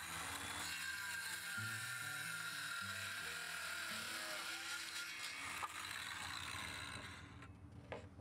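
Circular saw starting up and cutting through a thin plywood strip, the motor whine and blade noise steady for about seven seconds, then stopping and winding down near the end.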